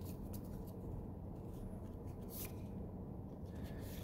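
Magic: The Gathering trading cards being flipped one by one through a freshly opened booster pack in the hands: faint card-on-card slides and flicks, a few light clicks, over a low steady room hum.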